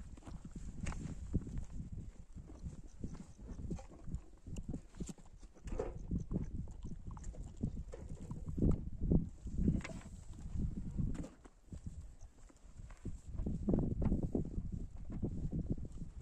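Irregular soft thumps, knocks and rubbing of hands and a leather skin handling fresh butter in an aluminium pot, heavier toward the end.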